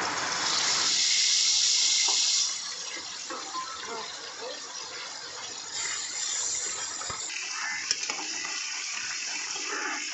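Spiced chicken pieces frying in hot oil in a metal pot, a loud sizzle for the first couple of seconds that settles into a quieter, steady sizzle with a few small spatters and clicks as the pieces are turned with a spatula.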